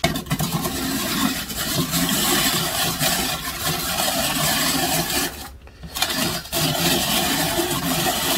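Hand-cranked rotary drum grater shredding a carrot through its coarse drum: a continuous scraping as the handle turns. It stops for about half a second about five and a half seconds in, then starts again.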